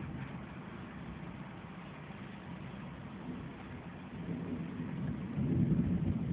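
A low, steady rumble that swells in the last two seconds.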